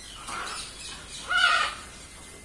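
Blue-and-yellow macaws calling: a short call about a third of a second in, then a louder one around a second and a half in.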